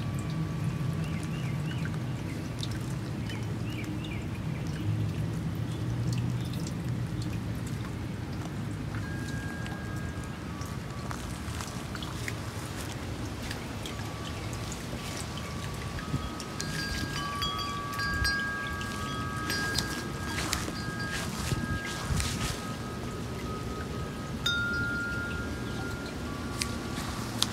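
Wind chimes ringing in a breeze, single tones at first and several tones sounding together in the second half, over a steady low background rumble.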